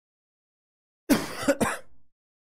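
A man coughing three times in quick succession, starting about a second in after complete silence.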